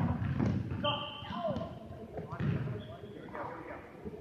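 Dodgeballs smacking and bouncing on a gym floor, with a sharp smack right at the start and several lighter knocks after it, amid players' shouts.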